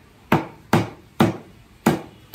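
Chinese cleaver chopping raw chicken into curry pieces on a thick wooden chopping block: four sharp chops, about two a second.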